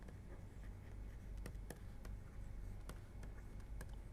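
Faint scratches and taps of a stylus writing on a pen tablet, a scatter of small clicks over a low steady hum.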